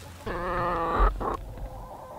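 A laying hen giving one long, drawn-out call of steady pitch lasting under a second.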